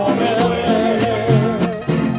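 Live mariachi band playing: strummed guitars in a steady rhythm over plucked guitarrón bass notes, with a melody held with a wavering vibrato above them.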